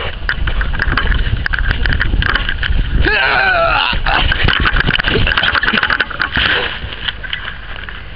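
Rough, heavy rumble and knocking from a handheld camera's microphone being jostled and buffeted by wind while it is carried at a run. A person yells, with a wavering pitch, about three seconds in.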